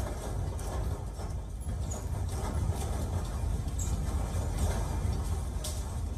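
Steady low rumble with irregular light rattling and clattering: the sound of a building interior shaking in an earthquake tremor, picked up on a phone microphone.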